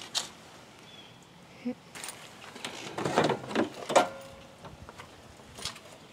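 Plastic push-pin fasteners being prised out of a car's plastic engine-bay cover and the cover handled: a few short, scattered clicks and scrapes of plastic.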